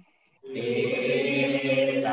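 Buddhist devotional chanting: after a short pause, voices start a long held chanted note about half a second in and sustain it steadily.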